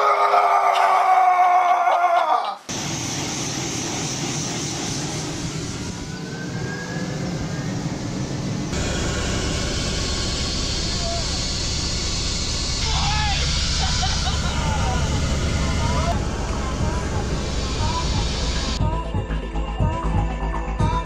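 A man shouts the last words of a sentence over wind. Then comes the steady noise of a helicopter's rotor and engine, heard from inside the cabin, which gives way to music about a second before the end.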